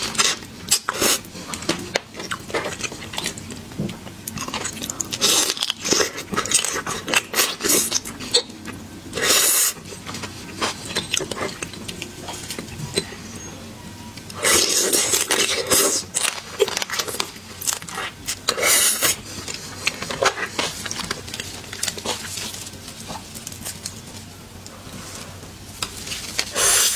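Close-miked mouth sounds of a person eating seafood: irregular wet chewing and biting, with several louder noisy bursts spread through.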